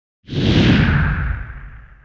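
A whoosh sound effect with a deep rumble underneath, coming in suddenly a quarter of a second in and fading away over the next second and a half, accompanying a TV channel's logo animation.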